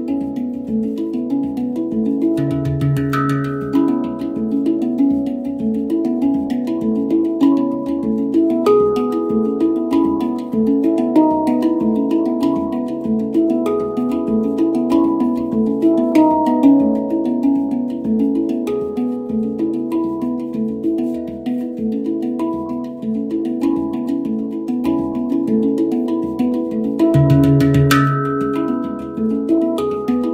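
Handpan played with the hands: a flowing run of quick, ringing steel notes, several a second, with a lower note joining about two and a half seconds in and again near the end.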